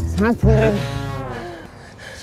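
A short pitched call, then one long, drawn-out low call that fades away, over a low bass beat that drops out about a second in.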